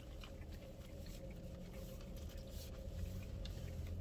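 A person chewing a mouthful of fried fish sandwich with the mouth closed: faint, soft, irregular chewing clicks over a steady low hum.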